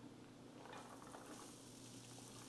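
Very faint sizzling of food warming in a frying pan on an electric stove, a soft steady hiss with light crackles.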